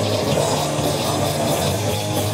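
Crust punk band playing live and loud: distorted electric guitars and bass over a drum kit, with cymbals struck in a steady, quick rhythm.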